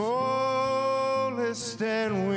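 A country-folk song: a singer slides up into one long held note, which breaks off about halfway through, then starts another note near the end, over a band with fiddle and guitar.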